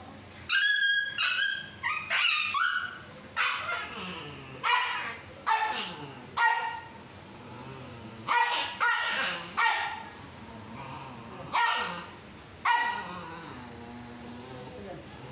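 A young tan-and-white dog barking in about a dozen short, high-pitched barks spaced unevenly, lunging at a person's hand. This is the defensive, aggressive barking of a dog with trust issues toward people.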